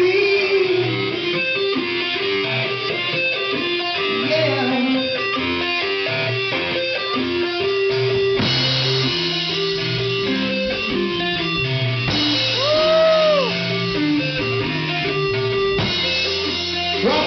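Live rock band playing: electric guitar over bass guitar and a drum kit. Near the end a note bends up and back down.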